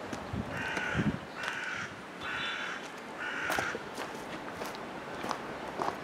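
A crow cawing four times, each harsh call about half a second long, in quick succession.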